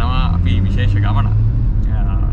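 Steady low rumble of a car on the move, heard from inside the cabin, under people's voices.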